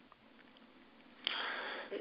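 Near silence, then a person's breath drawn in, starting a little past halfway through and lasting under a second.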